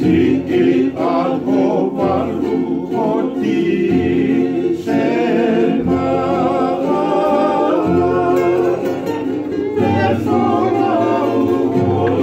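Several men singing a Tongan song together in harmony, accompanied by strummed acoustic guitars and ukuleles.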